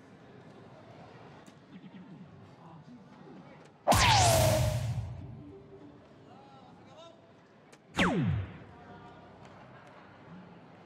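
DARTSLIVE electronic soft-tip dartboard playing its hit sound effects. About four seconds in, a loud effect with a falling sweep fades over about a second as a dart scores the bull. About eight seconds in, a shorter effect with a steep falling pitch sounds as the next dart scores a single seven.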